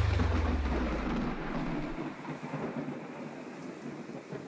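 Thunder-and-rain sound effect from a synth accompaniment track, fading out: a low rumble dies away about two seconds in while the rain hiss grows steadily fainter.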